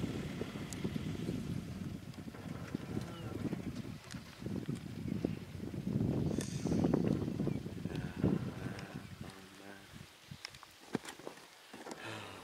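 Low rumbling outdoor background noise that swells and fades, with faint murmured voices; it drops away near the end, leaving a few sharp clicks.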